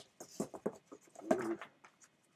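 Paper comics being handled in a cardboard box: a few short rustles and taps as the magazines are shifted and lifted, with a brief low murmur from a person about a second and a half in.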